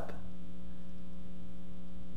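Steady electrical mains hum: a constant low buzz with a row of steady overtones, unchanging in pitch and level.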